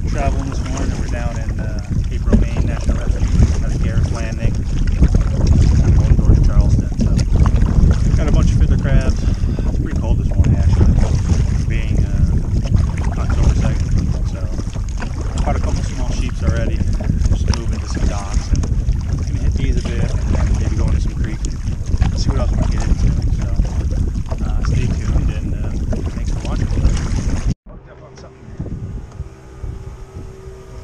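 Strong wind rumbling against the microphone on open water from a kayak, with a voice partly buried in it. It drops away suddenly near the end to a much quieter, sheltered sound.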